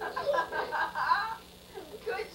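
A young child's voice vocalizing with a quickly wavering pitch, giggly or sing-song, for about a second and a half before a short pause.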